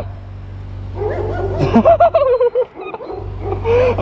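A high, wavering vocal call drawn out over about a second and falling in pitch, then a shorter call near the end, over a steady low hum.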